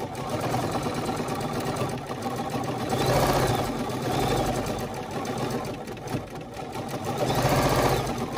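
Bernina 505 QE sewing machine stitching continuously in free-motion quilting, the needle running fast with its speed rising and falling, dipping briefly about six seconds in.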